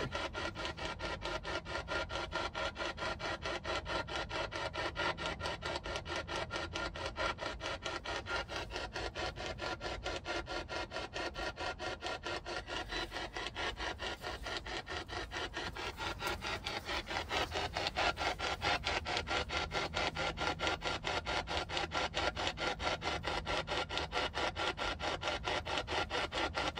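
P-SB11 spirit box sweeping through radio stations: a rasping hiss of static chopped into fast, even pulses several times a second, running steadily.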